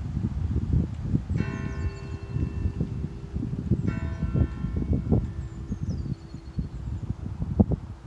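A church bell struck twice, about two and a half seconds apart, each stroke ringing on with a lingering hum. Wind buffets the microphone throughout.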